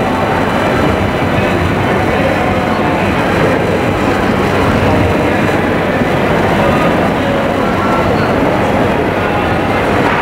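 Steady rumbling background noise with faint murmur of voices; no drum strokes are heard.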